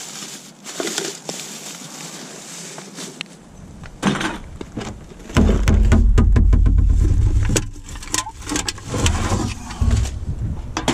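Plastic rubbish bags rustling and crinkling as gloved hands rummage through a plastic wheelie bin. A loud low rumble on the microphone comes in about halfway and lasts about two seconds.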